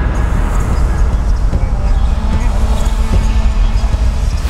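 Dramatic TV background score: a loud, steady low rumbling drone with faint sustained tones over it.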